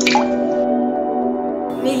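A single water drop plinks once at the very start, a sharp onset with a quick falling pitch, over soft ambient music of steady held tones.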